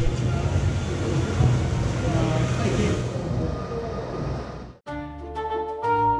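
Mack log flume boat moving through the ride's station, a steady low noise with faint voices around it. About five seconds in it cuts off suddenly and bright outro music with flute-like notes begins.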